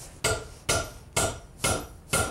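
Wood-handled claw hammer driving a steel nail into a solid timber beam: four full blows about half a second apart, each a sharp crack with a short metallic ring.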